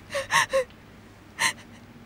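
A woman crying in short, catching gasps: a quick run of three sobbing breaths near the start, then one more sharp gasp about a second and a half in.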